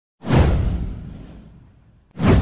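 Intro sound effect: a single whoosh with a deep rumble underneath, starting suddenly a moment in, falling in pitch and fading out over about a second and a half.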